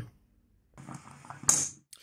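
Stovetop aluminium moka pot sputtering with a hiss as the brewed coffee spurts up into the top chamber. About a second and a half in, a single sharp metallic clack of its hinged lid is the loudest sound.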